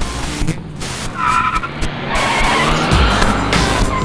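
Car tyres squealing and skidding from about a second in until near the end, with the car's engine under music. The car is a 1969 Ford Mustang.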